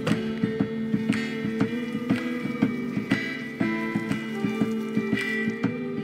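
Background music: a guitar picked in a steady rhythm over held notes.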